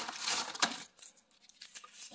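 Paper fast-food bag and paper sandwich wrappers rustling as they are handled, with a sharp tap a little over half a second in, then quieter small rustles and clicks.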